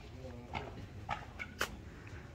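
Footsteps of a person walking outdoors: three sharp steps about half a second apart.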